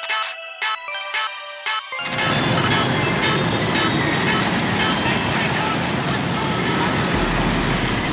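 Light music with chiming notes for about two seconds, then a sudden cut to loud city street traffic: motor scooters passing on the road, with a low engine hum coming in near the end.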